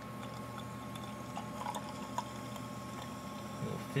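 A carbonated orange drink pouring in a steady stream from a can into a glass, fizzing as the glass fills.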